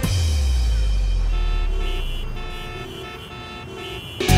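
Dramatic background-music sting: a deep bass boom with held higher notes over it, fading away over the few seconds.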